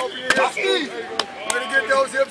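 Three sharp smacks, the first about a third of a second in and the last two close together after a second, among the shouts and talk of players and coaches.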